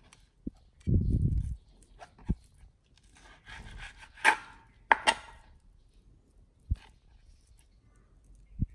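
Chef's knife slicing raw yellowfin tuna on a plastic cutting board, with a few short sharp taps of the blade on the board and two brighter slicing scrapes in the middle. A dog pants and sniffs, and there is a short low rumble about a second in.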